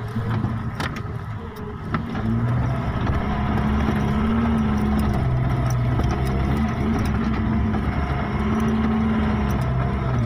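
A vehicle's engine running under load on a rough dirt track, heard from inside the cab, its pitch rising and falling. A few sharp knocks and rattles come in the first two seconds, and the engine grows louder about two seconds in.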